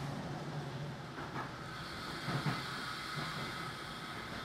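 Berlin S-Bahn electric train running along an elevated line, heard from inside the carriage: a steady rumble of wheels on rail, with a low hum that fades early on. Two brief knocks come about a second and two and a half seconds in.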